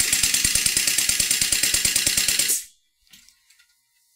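Sweeney Special Effects Capsule Launcher, a pneumatic rapid-fire gun running on compressor air, cycling on full auto with the trigger held: a loud, rapid, evenly spaced string of clacks from its pneumatic ram and firing valve, over a hiss of exhausting air. It stops abruptly about two and a half seconds in.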